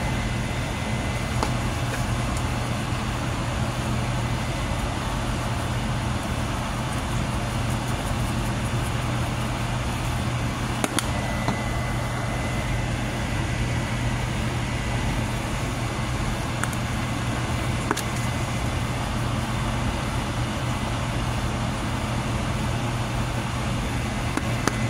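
Steady machine hum with a low drone and a faint thin high whine, unchanging throughout, with a couple of light clicks.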